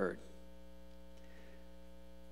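A steady electrical mains hum: low and buzzy, with many overtones, holding at an even level throughout.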